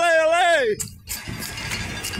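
A spectator's drawn-out, sung "allez" chant, rising and then falling away about three-quarters of a second in. A steadier, quieter noise of the passing race follows.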